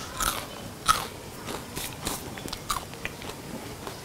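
A person biting into and chewing a crisp fried chakali made from fasting flour (upvas bhajani) and potato, giving a series of short crunches about every half second, loudest in the first second. The crunch shows the chakali is crisp and crunchy, as the cook calls it.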